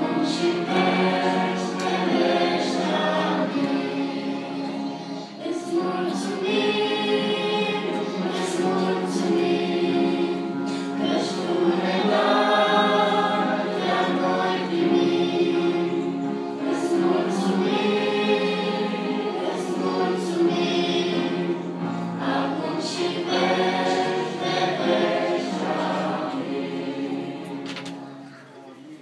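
A small church choir sings a hymn, and the song ends just before the close.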